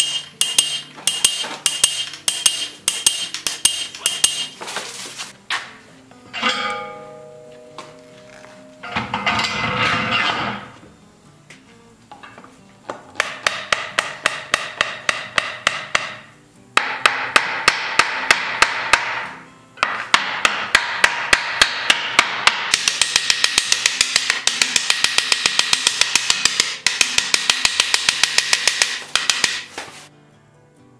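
Hammer striking a punch on a buggy wheel's iron tire over an anvil: quick, ringing metal blows in the first few seconds. Later come several runs of fast, evenly spaced metallic strikes, the longest near the end.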